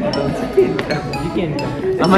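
Background music with bright chiming notes, with people's voices chattering over it.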